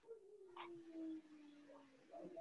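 A faint, drawn-out vocal sound: one long note that slides slowly down in pitch for about two seconds.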